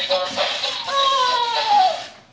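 MiBro toy robot (Really Rad Robots) playing its electronic dance tune through its small speaker: short repeated bright notes, then a long tone gliding downward that cuts off suddenly at the end.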